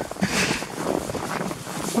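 Irregular crunching of steps in fresh snow, with wind noise on the microphone.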